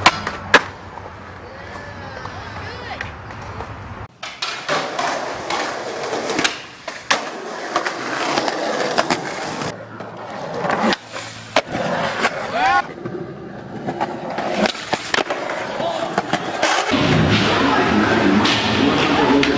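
Skateboard clips joined with abrupt cuts: wheels rolling on concrete with repeated sharp clacks and knocks of the board popping, landing and hitting a handrail.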